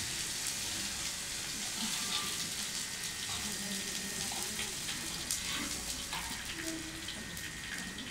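Onions sizzling steadily as they sauté in hot oil in a steel wok, stirred with a metal spatula that scrapes now and then. They are being fried until fragrant and dry.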